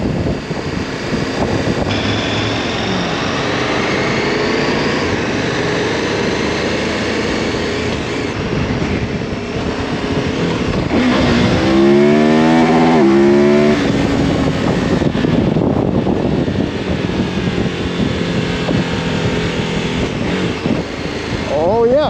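KTM Super Adventure's V-twin engine running as the motorcycle is ridden. A little over ten seconds in it accelerates hard, the pitch climbing in steps through quick quickshifter upshifts.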